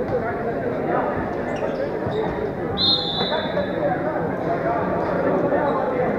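Handball being bounced and played on an indoor court, with echoing voices of players and spectators around it. A short high-pitched squeak sounds about three seconds in.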